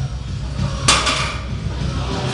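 A Rogue barbell loaded with 340 lb of iron plates set back down on the floor after a deadlift rep: one sharp metallic clank about a second in, ringing briefly.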